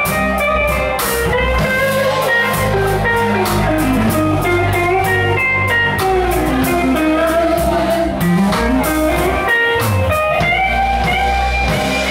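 Live blues-rock band playing an instrumental passage: an electric guitar leads with bent, gliding notes over bass guitar and a drum kit.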